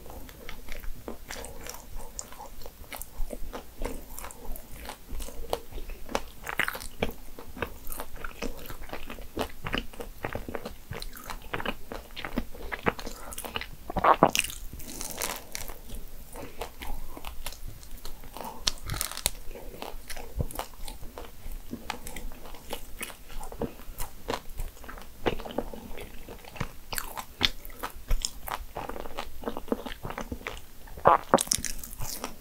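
A person biting and chewing a corn cheese financier, a small butter cake, picked up close by a clip-on microphone: many small clicks of chewing, with a louder bite about fourteen seconds in.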